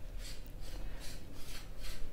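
Hands handling and rubbing the cloth of a kurta: a run of soft brushing rustles, several a second.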